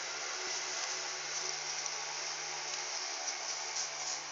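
Handheld hair dryer running steadily: an even rush of blown air over a low motor hum.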